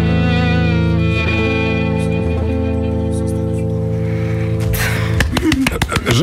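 Violin and acoustic guitar holding a long final chord of a reggae-style song, which stops about five seconds in; voices follow.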